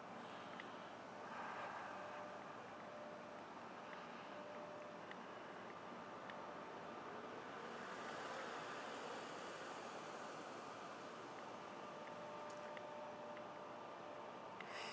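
Faint, steady car engine and road hum with a low hiss, swelling a little about eight seconds in.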